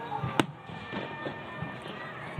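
Fireworks going off, with one sharp, loud bang about half a second in and fainter thuds after it, over a continuous background of the display.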